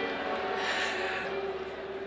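A man breathing into a close handheld microphone in a pause between sung lines: a soft rush of air a little after half a second in, over faint steady background tones.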